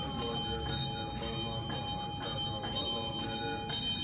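Bells ringing in a steady rhythm of about two strokes a second, each stroke bright, with a sustained ringing tone carrying on between strokes.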